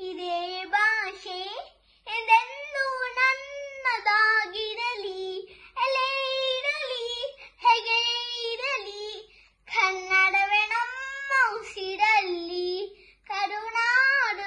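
A young boy singing a Kannada song unaccompanied, in long held phrases broken by short pauses for breath.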